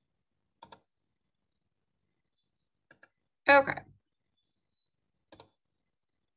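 Computer mouse double-clicks: three quick pairs of clicks a couple of seconds apart.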